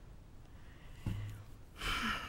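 Quiet pause with room tone, a short low sound about a second in, then a woman drawing a breath into the pulpit microphone near the end.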